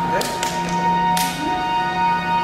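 Soundtrack of an exhibition film played over loudspeakers: held music notes with three sharp sound-effect strokes, two close together near the start and a third about a second in that trails off.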